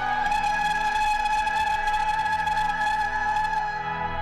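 Church music: a long, steady closing chord of a hymn, held by voices and instruments, that stops shortly before the end, leaving a low tone fading.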